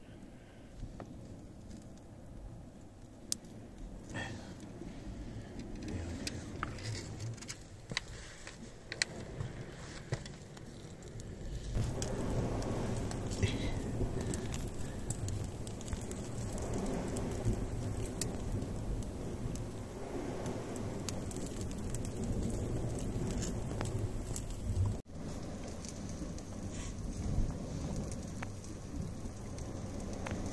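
Sausages on metal skewers roasting over wood embers, with scattered crackles and pops. From about twelve seconds in, a steady low rumble joins the crackling.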